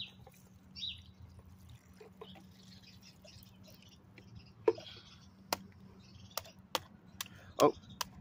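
Screwdriver tip tapping and chipping at a block of ice frozen around a toy truck: a series of sharp clicks, about six in the second half, each under a second apart.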